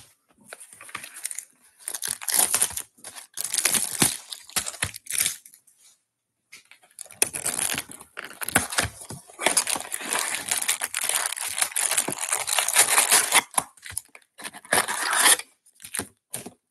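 Plastic shrink wrap being torn and crinkled off a cardboard trading-card box, in bursts for the first five seconds or so. After a short pause comes a longer stretch of crinkling and rustling as the box is opened and its foil card packs are pulled out.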